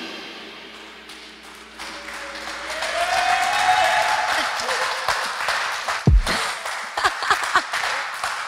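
The band's last chord rings and fades away, then a small group of people clap and cheer, with one long whoop in the middle. Scattered claps and laughing voices follow near the end.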